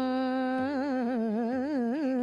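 A solo voice sustaining one sung note, then wavering through quick ornamental turns of pitch in a melismatic, Hindustani light-classical style.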